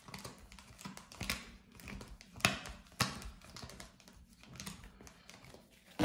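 A tarot deck being flicked through card by card: quick, irregular papery clicks and rustles of card stock, with two louder clicks about two and a half and three seconds in.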